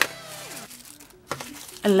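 Faint crinkling of the thin plastic wrap around a small power bank as it is handled and picked up off a desk. There is a sharp tap at the very start and another short crinkle about a second in.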